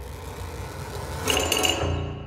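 Contemporary percussion ensemble music: the ring of earlier strokes dies away over a low sustained tone, then about halfway through a fast repeated figure with a high ringing pitch comes in.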